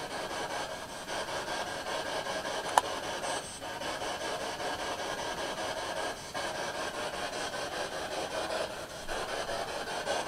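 Spirit box static: a steady hiss of radio noise as the device sweeps, with brief dropouts every few seconds and a single sharp click about three seconds in.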